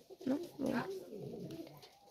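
Domestic pigeons cooing softly, low-pitched.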